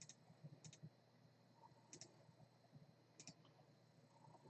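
Near silence with four faint, widely spaced double clicks, like a computer mouse button being pressed and released.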